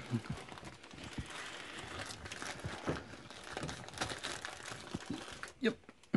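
Thin plastic packaging crinkling and crackling as it is handled, a continuous run of small crackles that fades near the end.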